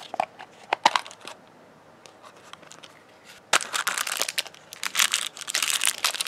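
A few sharp plastic clicks as the plastic shell of an LOL Surprise ball is worked open. Then, from about three and a half seconds in, dense crinkling of the thin plastic wrapper inside it as it is handled.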